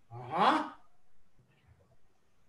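A person's short, breathy vocal sound, rising in pitch and lasting about half a second, followed by quiet.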